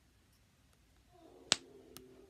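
One sharp snapping click about one and a half seconds in from a small plastic snapper fidget toy being flicked, with a few much fainter ticks around it.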